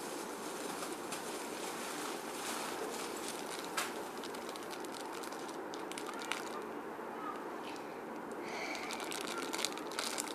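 Clear plastic toy packaging rustling and crinkling as it is handled, with sharper, denser crinkles near the end.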